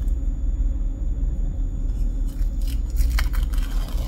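A peel-off face mask being pulled away from the skin, with faint crackling and tearing from about halfway through, over a steady low rumble.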